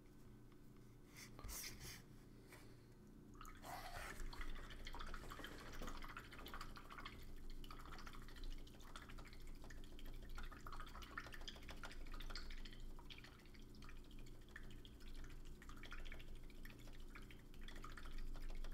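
Faint, irregular watery swishing and dripping with small clicks, starting a few seconds in: a paintbrush being rinsed in a water pot.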